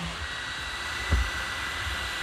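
Ortur laser module's cooling fans running on after the laser is switched off: a steady whir with a thin high whine. A short low knock about a second in.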